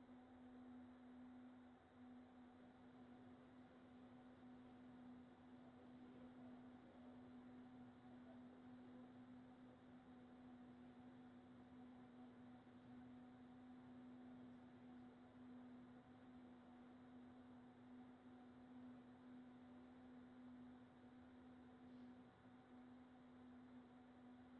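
Near silence: a faint, steady, unchanging hum at a single low pitch over soft hiss.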